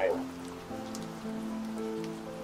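Soft background film music: sustained chord tones that shift to new notes about a second in, over a faint hiss.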